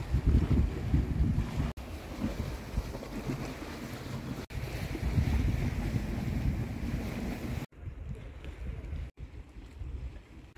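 Gusty wind buffeting a phone microphone over the wash of the sea. The sound breaks off for an instant several times and is quieter over the last couple of seconds.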